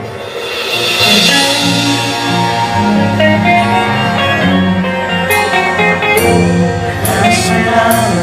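Rock band playing live, with electric guitars, bass guitar and drums. The loudness dips briefly at the very start before the band swells back in, with a few sharp drum hits near the end.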